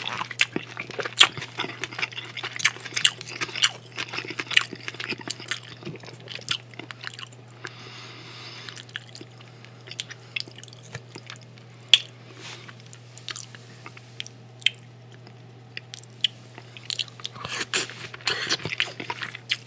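Close-miked wet chewing of a mouthful of soft food, mushrooms and onions in sauce, with smacking mouth clicks. The chewing is dense for the first several seconds and then comes in sparser clicks, with a brief soft rustle about eight seconds in and a sharp click about twelve seconds in.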